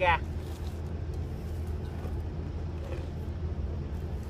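A steady low background hum with no change in level, the kind a running motor or distant engine makes.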